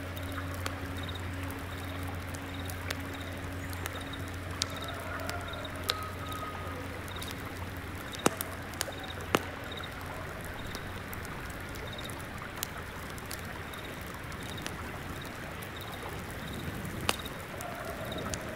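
Layered morning ambience: a stream flowing steadily, with a singing bowl's low hum dying away in the first several seconds. Over it come sparse crackles of incense embers, a single insect chirping in short regular pulses, and a few bird calls about five seconds in.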